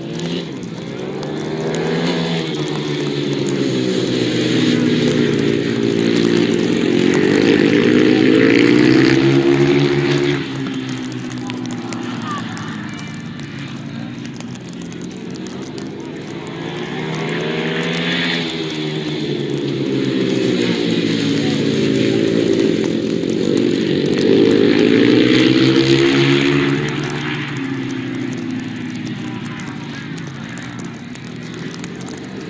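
Ice speedway motorcycles racing, their 500 cc single-cylinder engines revving up and down through the corner. The sound swells twice as the bikes pass close, then eases as they move off round the track.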